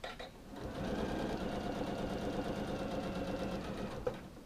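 Janome sewing machine stitching a seam at a steady, even speed, starting up about half a second in after a couple of short clicks.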